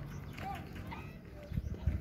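Quiet outdoor background among a herd of cattle: a low rumble with a few faint, brief distant calls about half a second and a second in.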